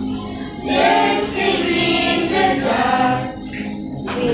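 A group of children singing a song together, with a new phrase swelling up just under a second in and a brief lull near the end.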